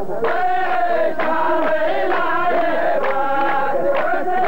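Chorus of men chanting a sung poetry line in unison, the long held notes of the qalta chorus repeating the poet's verse.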